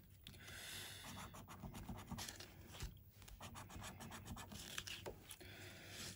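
A coin scraping the scratch-off coating off a paper scratchcard: faint, quick rasping strokes in short runs, with a brief pause about three seconds in.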